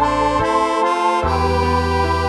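Tremolo harmonica melody climbing through a short run of notes over a sustained organ-like backing. The low backing drops out about half a second in and comes back just over a second in.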